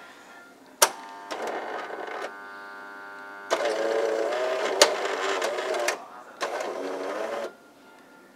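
Automatic coffee machine working through its dispensing cycle into a cup of frothed milk: a click about a second in, then its motor and pump running in several stages, a steady hum, a louder wavering stretch and a shorter final run before it stops near the end.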